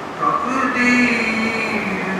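A man's voice chanting in long held notes, resuming after a brief pause just at the start.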